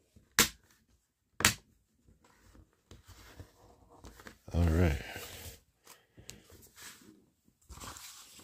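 Two sharp plastic clicks about a second apart as a Playmobil blue water piece is pressed into its grey base, followed by the soft rustle of a paper instruction booklet being handled and turned. A brief hummed voice sounds about halfway through.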